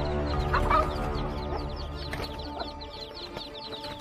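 Chicks peeping in quick, high, repeated cheeps, with one louder hen squawk about half a second in, as a bird of prey pins the hen down. Background music with a sustained low bass runs underneath.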